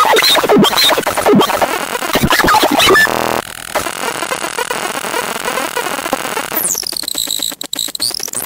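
Circuit-bent speech chip from a VTech My First Talking Computer sputtering garbled, chopped-up speech fragments. A little over three seconds in it switches to a buzz and a wash of hiss. Near the end come swooping glides in pitch over rapid clicking.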